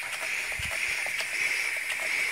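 An E. T. Westbury-design model twin-cylinder paddle steam engine running on compressed air: a steady hiss of air with light ticks from the mechanism a few times a second, and a soft low thump about half a second in.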